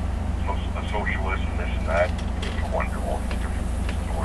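Faint, indistinct speech over a steady low hum.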